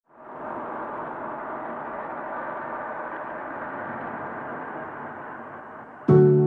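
Steady rushing ambient noise with no clear pitch, fading in over the first half second and easing slightly near the end.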